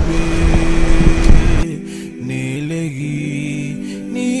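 A car driving off on a dirt surface, engine and tyre noise under background music. The car noise cuts off suddenly a little under halfway through, leaving only the music.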